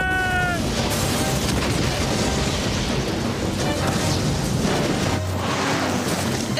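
Cartoon earthquake sound effects: a dense crashing rumble of shaking ground and falling rock, over music. A held tone falls away in the first half-second, and the rumble eases to a low hum about five seconds in.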